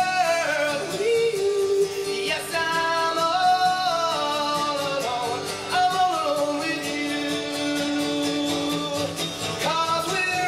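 A man singing a folk song live into a microphone, accompanying himself on acoustic guitar, with long held notes that slide between pitches.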